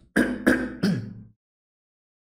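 A man clearing his throat in three quick pushes, stopping abruptly about a second and a half in.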